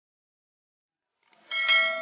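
Subscribe-button animation sound effect: a single bright bell ding about one and a half seconds in, ringing on briefly with several clear tones before fading.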